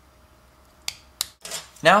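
Two sharp plastic clicks about a second in, a few tenths of a second apart, then a brief rattle as a plastic model-kit parts sprue is picked up and handled.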